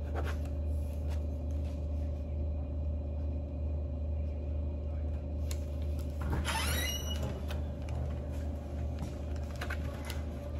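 Steady low hum of a quiet room, with faint scratching and rustling of a pen and paper forms being filled in. A short rising squeak sounds a little past the middle.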